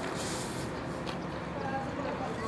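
Steady outdoor background noise with faint, indistinct voices in the distance.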